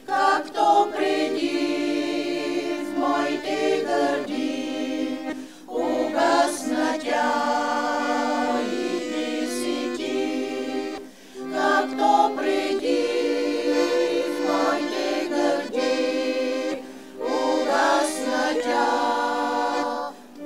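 A women's vocal group singing an old Bulgarian urban song together in harmony, in phrases of about five or six seconds with short breaks between them.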